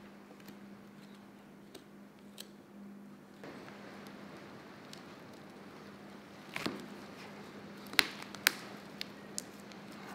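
Knife cutting through the tendons and muscle that hold a whitetail deer's lower jaw to the skull: quiet wet cutting with faint clicks, then a few sharp cracks between about two-thirds and four-fifths of the way through as the jaw pops loose. A steady low hum runs underneath.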